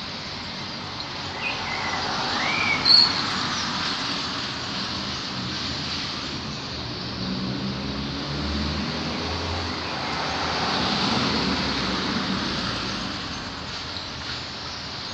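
Passing road vehicles: a steady noise swells and fades twice, with a low engine hum about halfway through. A few short bird chirps come near the start.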